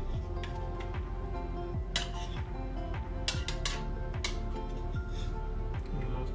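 A metal spoon clinking and scraping against a frying pan several times as butter sauce is spooned around, over background music with a beat.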